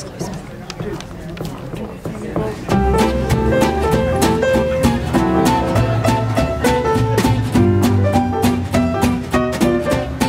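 A small traditional jazz band kicks off a tune about three seconds in, piano, guitar, string bass and drums playing together in a swinging beat, after a few quieter seconds.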